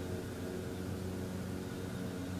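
A steady low mechanical hum with a faint hiss, unchanging throughout.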